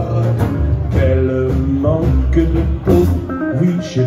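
Live small swing band playing an instrumental passage: guitar notes and chords over an upright double bass. Singing comes back in just at the end.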